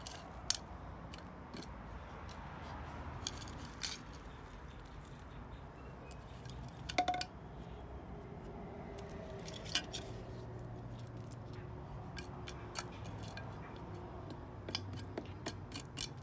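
Small hand trowel scraping and scooping loose garden soil, with scattered light clicks and crunches as soil and grit are moved.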